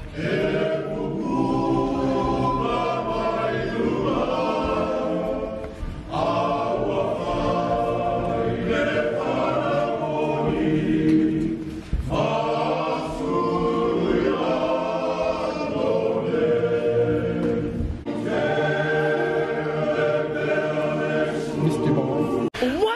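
A choir of men singing a hymn in harmony, in long held phrases with brief breaks about every six seconds.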